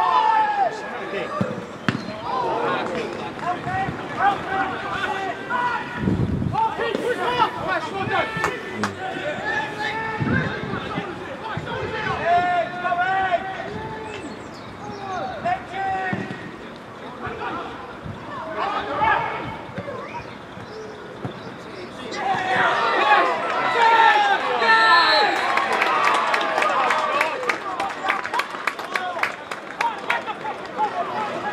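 Outdoor football match sound: players' shouts carrying across the pitch, with a couple of dull ball-kick thuds. About two-thirds of the way in, a goal is scored and the shouting swells into cheering, with clapping towards the end.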